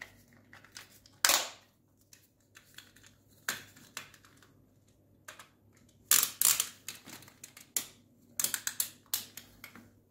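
Sharp clicks and knocks of hard plastic as a SwitchBot Curtain motor and its plastic fittings are handled and snapped onto a metal curtain rod: one loud click about a second in, a few more around four seconds, then a quick run of clicks from about six to nine seconds.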